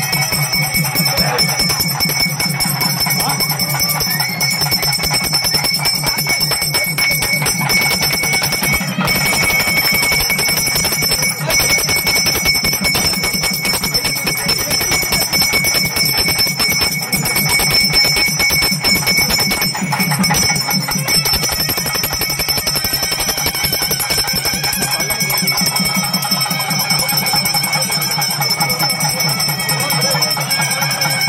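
Puja hand bell rung rapidly and without a break during a camphor-flame aarti, its fixed ringing tones going on throughout, over a steady, rapid low pulse.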